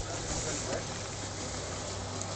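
Toyota Land Cruiser engine idling steadily, a constant low hum under an even background hiss.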